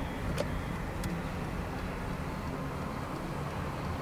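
Steady road and engine noise of a car driving along a city street, picked up through the open side window, with a couple of faint clicks in the first second.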